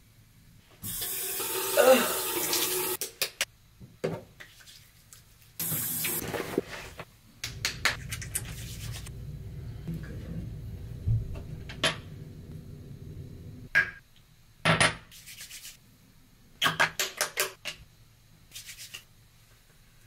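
Water from a bathroom sink tap running in several separate stretches, with hands splashing and rubbing water over the face. Near the end come a few short, sharp clicks and knocks.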